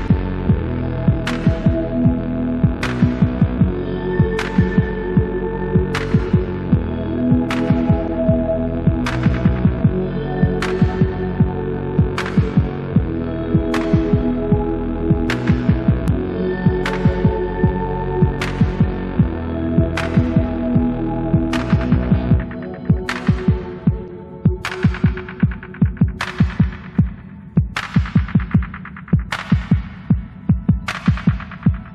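Background music with a deep, throbbing pulse under sustained chords and a sharp hit about every second and a half. About 22 seconds in, the bass drops out and the hits come faster.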